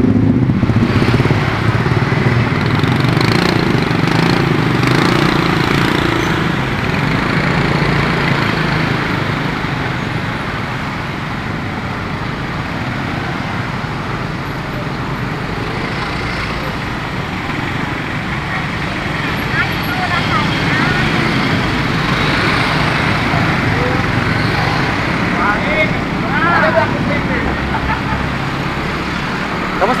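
Steady road noise from a motorcycle riding through congested street traffic: its engine running, with other motorbikes, cars and minibuses close by. The low engine hum is strongest in the first few seconds.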